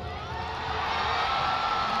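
Large stadium crowd cheering, a steady wash of many voices that swells a little after the first half second.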